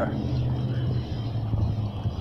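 A steady low engine hum.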